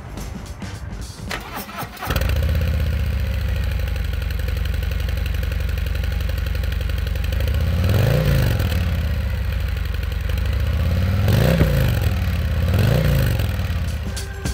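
A 2019 Harley-Davidson CVO Road Glide's 117 cubic inch V-twin starts suddenly about two seconds in and settles into a steady idle. It is then revved three times, each a quick rise and fall in pitch, the last two close together near the end.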